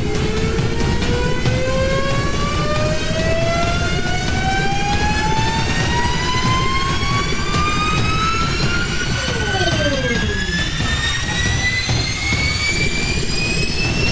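Launch-style sound effect: a steady jet-engine rumble under a whine that climbs slowly and evenly in pitch throughout. Two short whistles glide downward about nine to ten seconds in.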